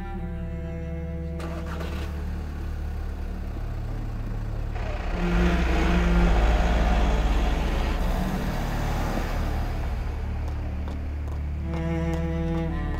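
Background music of low bowed strings (cello and double bass) throughout. A thud about a second and a half in, then from about five seconds in a van driving off, its engine and tyre noise swelling to the loudest point and fading out by about ten seconds.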